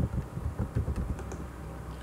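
Computer keyboard typing: a quick, irregular run of key presses that dies away after about a second and a half.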